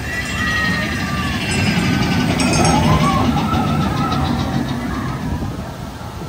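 Big Thunder Mountain Railroad mine-train roller coaster running along its track and past, growing louder to a peak about three seconds in and then fading, with riders' voices shouting over it.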